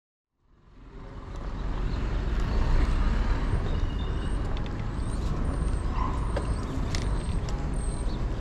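Outdoor street ambience fading in from silence: a steady low rumble of road traffic, with small birds chirping repeatedly high above it.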